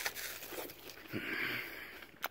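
A bite taken into a fresh, not-quite-ripe apple still hanging on the tree, then chewing.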